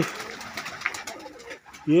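Domestic pigeons cooing softly in a loft, heard in a lull between a man's words.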